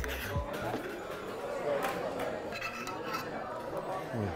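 A metal spoon clinking and scraping in a small metal saucepan: a sharp clink at the start and a few lighter ones about two seconds in, over the murmur of a crowded bar and background music.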